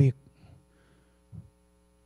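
A man's last word over a microphone ends, then a faint, steady electrical mains hum from the sound system fills the pause, with one brief low sound about a second and a half in.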